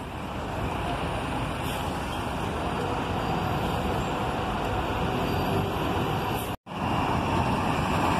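Steady rumble of bus engines and street traffic. It breaks off for an instant near the end, then comes back a little louder with a city bus close by.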